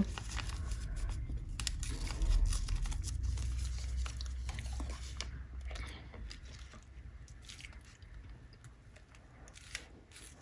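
Paper rustling and crinkling as a newspaper clipping is bent, folded and pressed down onto a page laid over Mylar sheets, with a low rumble under it for the first half; the handling sounds thin out toward the end.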